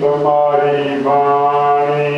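A man chanting Gurbani scripture in a slow, intoned recitation, drawing each syllable out into a long, steady-pitched note.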